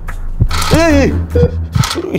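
Slime Surgery alien operation toy set off as the tweezers touch the base: a low electric buzz that holds for most of two seconds, with a couple of short electronic beeps and clicks. A brief rising-and-falling cry sounds over it about a second in.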